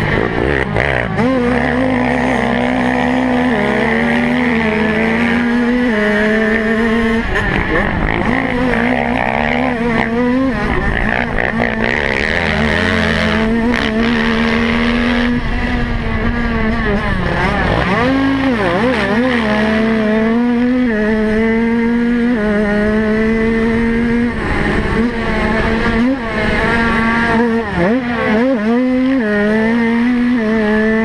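Onboard sound of a small motocross racing bike's engine held at high revs. Its pitch stays nearly level, with short dips and steps up and down as the throttle and gears change. A rushing noise, typical of wind on the mounted camera, runs under it.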